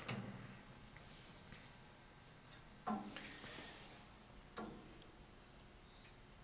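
A few light metallic knocks and clicks from the steel screen and chamber parts of a paper disintegrator being handled and opened: one about three seconds in and a smaller one near five. The motor is not running.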